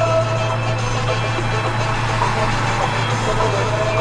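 Zastava 750's small rear-mounted four-cylinder engine droning steadily at motorway speed, heard inside the cabin, with music playing underneath.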